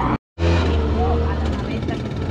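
A small vehicle's engine running steadily with a low hum. It starts straight after a brief moment of silence at a video cut near the beginning.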